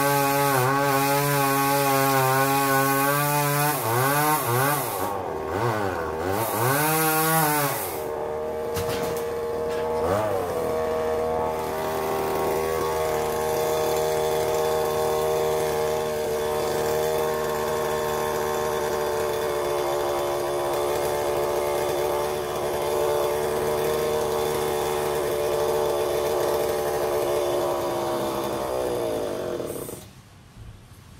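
Two-stroke chainsaw running at high revs, its revs dropping and rising a few times, then running steadily at lower revs until it cuts off abruptly near the end.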